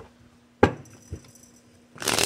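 A sharp knock about half a second in and a softer one about half a second later, from a deck of tarot cards being handled and tapped on a table. A riffle shuffle of the cards starts right at the end.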